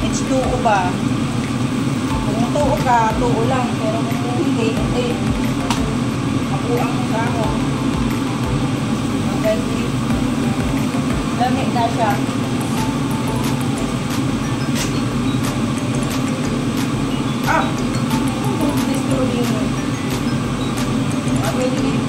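A steady low droning hum runs throughout, with faint snatches of voices over it.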